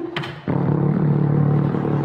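Microwave oven starting up: a click just after the start, then a steady low hum of the oven running.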